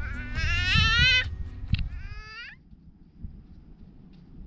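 A toddler's voice: two drawn-out, high-pitched wailing calls, the first rising in pitch and the second sliding down at its end.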